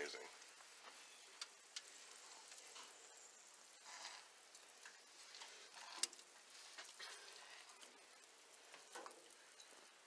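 Faint sizzling and crackling of hot grease on the foil under venison-sausage-wrapped jalapeño poppers on a grill, with a few light clicks and bumps as they are picked up off the foil.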